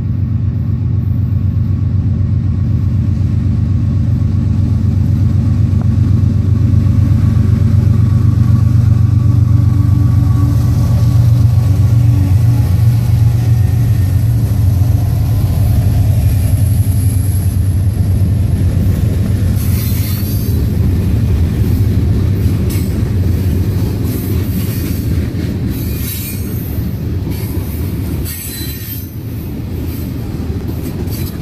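Norfolk Southern freight train with a multi-unit diesel locomotive lashup passing close by: the locomotives' engines drone loudest about a third of the way in, then the freight cars roll past with wheels clicking over rail joints and some wheel squeal.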